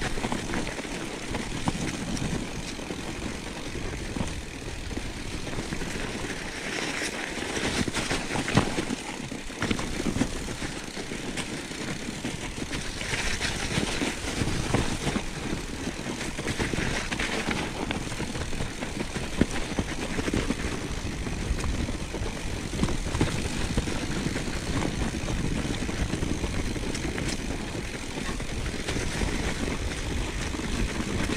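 Mountain bike riding down a snow-covered trail: a steady rumble and rattle from the bike and its tyres on the snow, with scattered sharp knocks. There are a few brief, louder hissing stretches, including one about 13 to 14 seconds in.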